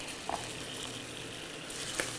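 Chicken pieces and freshly added sliced mushrooms sizzling steadily in hot oil in a stainless-steel skillet.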